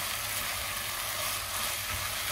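Food frying in a cooking pot with a steady sizzle, as the base of a strained lentil soup is cooked before the water goes in.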